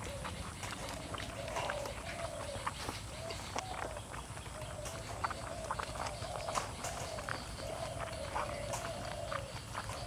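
Close-miked chewing and lip-smacking while eating fatty pork belly by hand, a steady run of sharp wet mouth clicks. A repeated wavering call sounds in the background throughout.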